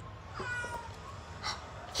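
Tabby house cat meowing once, a short call about half a second in.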